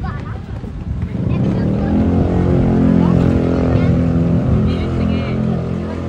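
A motor vehicle engine running close by: a steady drone that swells about a second in and eases slightly near the end.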